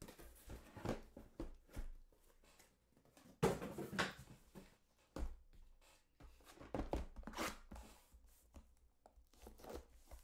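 Cardboard packaging being handled by hand: irregular rustles, scrapes and light knocks as a case is opened and boxes are set down. The longest rustle comes about three and a half seconds in, with another past seven seconds.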